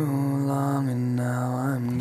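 Acoustic rock song: a male voice holds one long sung note, its pitch wavering slightly, over acoustic guitar.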